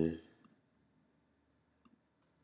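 A couple of faint computer-mouse clicks, one about half a second in and one near the end, over quiet room tone after a spoken "uh" trails off.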